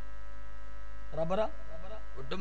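Steady electrical mains hum in the sound system, with one short rising vocal sound from a man just past the middle.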